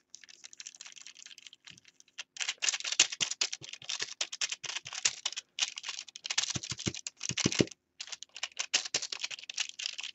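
Paintbrush stirring and working acrylic glaze into matte medium on a foil-covered palette: a dense run of small scratching clicks as the bristles scrub against the foil. It is fainter for the first two seconds, then louder, with a few brief pauses.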